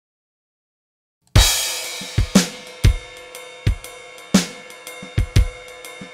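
Silence, then a little over a second in a drum-kit shuffle groove starts on a crash cymbal hit, with ride cymbal ringing over kick and snare strokes. It is a drum clip from a DAW's bundled content being auditioned.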